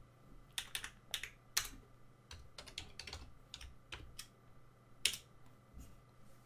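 Irregular keystrokes on a computer keyboard as a short command is typed, about a dozen separate key presses with one louder press about five seconds in.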